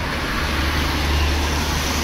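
Road traffic noise on a wet street: a steady hiss over a low rumble that grows a little louder about half a second in.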